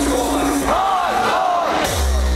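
A festival crowd yelling and cheering in a break in loud hardcore techno: a fast repeating figure in the music cuts out well under a second in, leaving the crowd's shouts, and a falling sweep near the end leads back into heavy bass.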